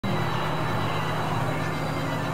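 Dense experimental electronic drone, a wash of noise with steady held tones, a low one and a thin high one, cutting in abruptly at the start and holding an even level.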